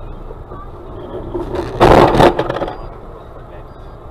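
Car collision: steady road noise, then a loud crash and scrape about two seconds in, lasting about half a second.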